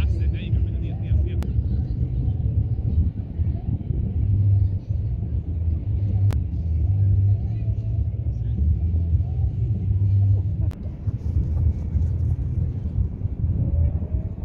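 Wind buffeting the microphone: a loud, uneven low rumble throughout, with a few sharp clicks.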